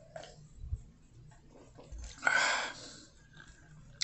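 A man drinks from a beer glass: a quiet sip and swallow, then one breathy exhale of about half a second, a little over two seconds in.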